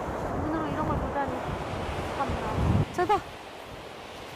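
Wind buffeting the microphone over surf washing on a beach, with faint voices mixed in. The noise drops away about three seconds in, just after a short spoken word.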